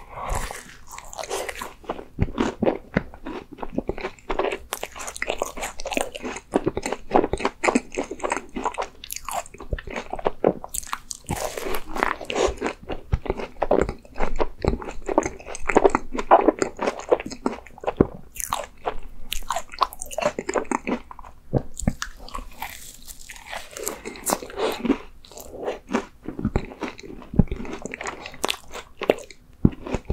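A person biting into and chewing a Baskin-Robbins injeolmi ice cream macaron, close to the microphone. Many short, sharp, irregular mouth clicks and chewing sounds.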